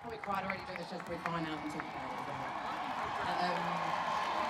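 Concert crowd between songs: nearby audience members talking indistinctly over a general crowd hubbub, with a few scattered claps in the first two seconds.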